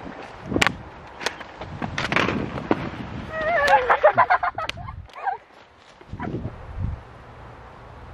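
Rustling and scattered sharp clicks of handling, and a little past three seconds in, about a second of a child's high, wavering voice.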